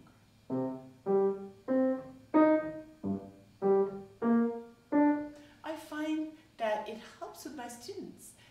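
Grand piano playing about eight detached notes in an even, unhurried pulse, each one struck and dying away quickly. This is a gentle wrist staccato meant to imitate the plucking of a lute or guitar string.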